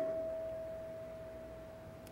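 A single steady, pure ringing tone from the church sound system, fading away over about two seconds, typical of a PA system ringing near feedback.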